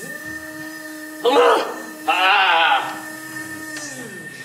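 A steady held tone, low and flat in pitch, that sounds for almost four seconds and slides down as it stops. It is broken by two short, loud vocal outbursts about one and two seconds in.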